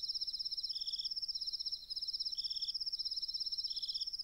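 Crickets chirping in a steady, rapidly pulsing high trill. A second, lower trill comes in short bursts of about half a second, three times.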